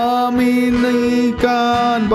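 A man singing a worship hymn in Indonesian, holding one long sung note with a brief break about one and a half seconds in.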